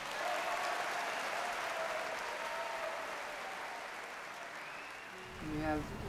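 Concert-hall audience applauding, starting just as the orchestra's final chord breaks off and slowly fading away over about five seconds.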